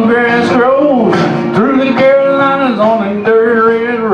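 Country-rock karaoke backing track in its instrumental break, with a lead instrument playing held notes that bend in pitch over the band.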